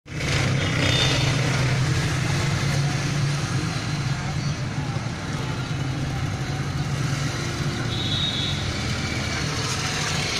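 A vehicle's engine running steadily, a constant low hum from inside the cab.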